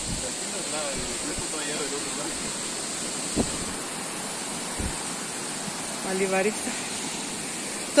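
Steady outdoor hiss with faint, distant voices twice and a couple of soft thumps in the middle.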